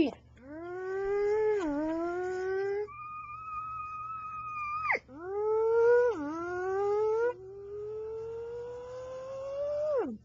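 A person imitating motorbike engines with the voice: four long held engine hums one after another, the first two rising with a dip partway through, a higher steady one from about three to five seconds in, and a last one slowly rising in pitch.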